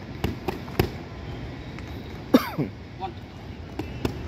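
Boxing gloves smacking against focus mitts, three quick hits in the first second and another near the end. About halfway there is a short shout that falls in pitch, the loudest sound.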